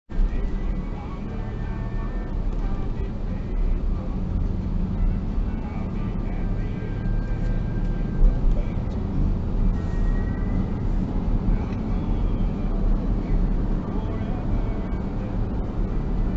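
Steady low rumble of road and engine noise inside a car's cabin while driving at city speed, picked up by a dashcam.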